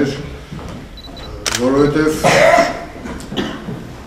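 A man's voice speaking: a quieter pause in the first second or so, then a louder phrase.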